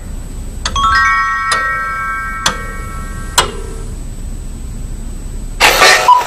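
Cartoon sound-effect chimes: about four bell-like notes struck roughly a second apart, each ringing on over a low hum. A sudden loud burst of noise comes near the end, as the cartoon cuckoo-clock scene begins.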